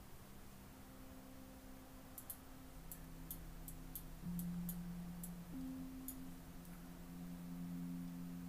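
Soft ambient background music: sustained low notes that shift to new pitches a few times. Over it come about ten faint, light clicks in the middle stretch, from a computer mouse working the planetarium view.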